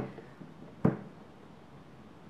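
Quiet room tone with a single short, sharp click a little under a second in.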